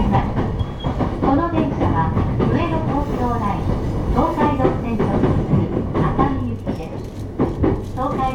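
Steady low rumble of a JR East E233-series electric train running, heard from inside the passenger car, with a voice speaking over it most of the time.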